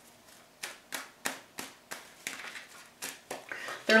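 Tarot cards being handled and laid out on a wooden table: a run of short, sharp clicks and card slaps, about three a second and unevenly spaced.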